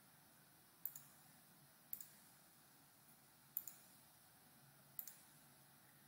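Four faint computer mouse clicks, spaced one to one and a half seconds apart, over quiet room tone. Each click is a quick double tick of the button being pressed and released.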